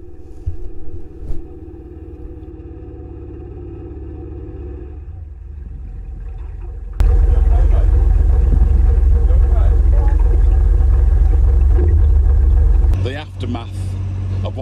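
A narrowboat's engine runs steadily. About seven seconds in, the sound jumps suddenly to a much louder, deep rumble that lasts about six seconds, with a man's voice calling over it.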